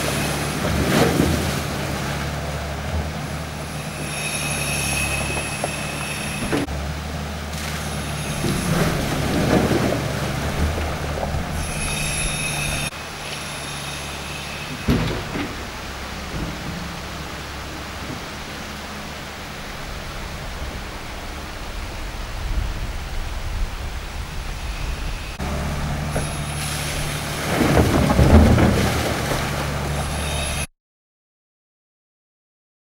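Tracked excavator's diesel engine running, with high hydraulic whines as the bucket works, and loads of mud and rock landing with heavy crashes about a second in, around ten seconds in, at fifteen seconds and near the end. From about thirteen to twenty-five seconds the engine fades and a quieter steady noise remains.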